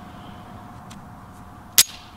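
A single sharp shot from a Springfield EMP 9mm 1911 pistol near the end, over a faint steady whine from a mosquito at the microphone.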